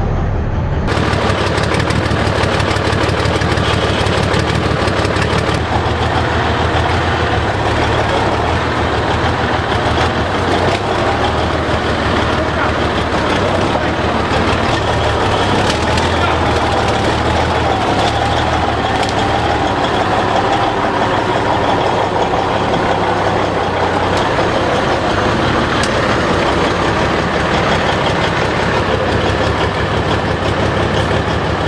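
A BMP-based armoured vehicle's 15.8-litre V6 diesel engine running steadily and loudly with a deep, even note, warming up shortly after a start.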